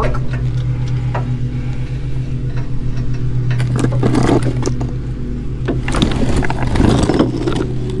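Hand tools scraping and clinking against the steering damper's mounting hardware, with a few louder knocks about halfway and again past the middle, over a steady low machine hum.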